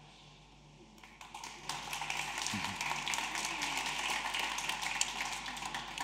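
An audience applauding, building up about a second in and holding steady, with a few voices murmuring beneath the clapping.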